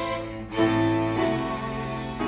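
Piano trio playing classical chamber music live: violin and cello bowing sustained notes over piano, with a brief dip and then a louder new chord about half a second in.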